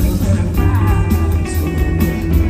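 A rock band playing live, led by guitar over a steady, heavy bass line, with no vocals.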